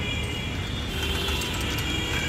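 Small children's bicycle with training wheels rolling over brick paving, with a ratcheting mechanical clicking and rattle from the bike.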